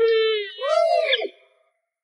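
A young girl crying out in a wail: one held cry, then a second that rises and falls and drops away. The crying stops about a second and a half in.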